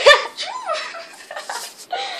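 A girl's high-pitched squealing laughter in short bursts, loudest right at the start.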